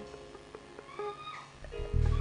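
Soft background worship music: sparse plucked, guitar-like notes with a short sliding tone about a second in, and a low keyboard swell rising near the end.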